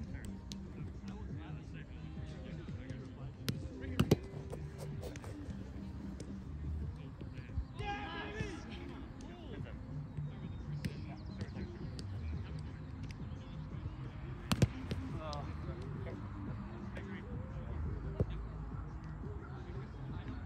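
A few sharp smacks of a Spikeball (roundnet) ball struck by hand and bouncing off the net, over a steady murmur of distant voices. There is a quick double hit about four seconds in and another loud smack near fifteen seconds.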